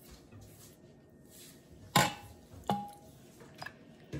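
Metal ladle serving chowder out of a stainless steel pressure-cooker pot into a ceramic bowl: a sharp knock about halfway through, then a clink that rings briefly, and a faint tick near the end.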